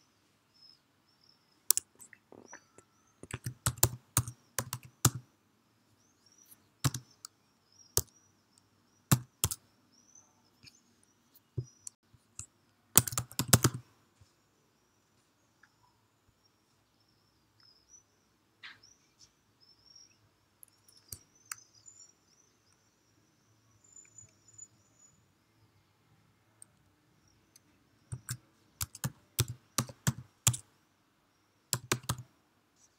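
Keystrokes on a computer keyboard, typed in short bursts with a long pause in the middle and a last burst near the end.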